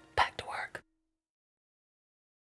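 A brief breathy whisper from a person, lasting about half a second, then the sound cuts off to dead silence.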